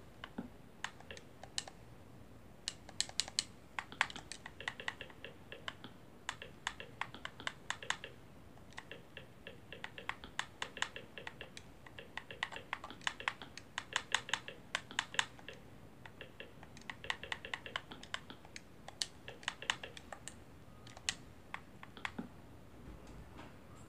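Faint quick clicks in bursts of several a second, with short pauses between, as letters and numbers are picked one by one on an Xbox One's on-screen search keyboard.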